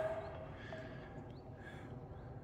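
Quiet outdoor ambience: a faint steady hiss, with a soft brief noise near the end.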